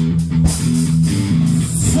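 Rock band music: electric guitar and bass guitar holding low notes over drums with steady cymbals.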